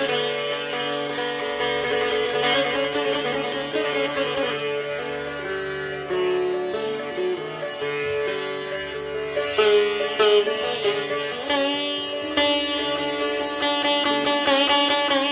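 Sitar playing an alaap in Raag Bhatiyar: plucked melody notes that bend in pitch over a steady ringing drone, with louder, quicker strokes in the second half.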